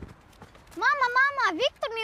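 A boy speaking in a high, sing-song voice, his pitch swinging up and down, starting a little under a second in.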